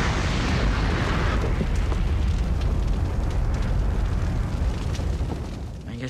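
Sound effect of a ship fire: a sudden rushing burst of flame at the start, then a loud, low rumbling noise of burning that thins out near the end.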